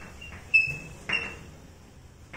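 Chalk writing on a blackboard: two short, sharp strokes about half a second and a second in, each with a brief high squeak.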